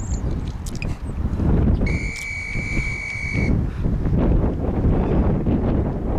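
Gusty wind rumbling on the microphone. About two seconds in, a single steady high tone sounds for about a second and a half, the kind of signal that marks a change between work and rest in a timed interval workout.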